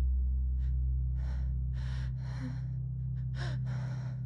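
A man breathing hard in several sharp gasps, about five breaths, over a steady low drone that eases a little about two seconds in.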